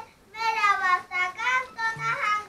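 A young child singing in a high voice, in short phrases with brief breaks between them.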